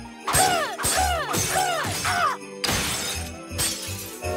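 Cartoon sound effects of objects smashing and shattering, several crashes in quick succession, over upbeat background music with a bouncing four-note melody in the first half.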